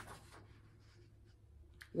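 Faint rustle of paper book pages being handled and turned.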